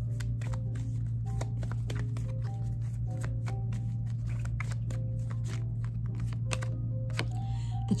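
A tarot deck being shuffled by hand: a long run of quick, soft card clicks. Faint background music and a steady low hum sit underneath.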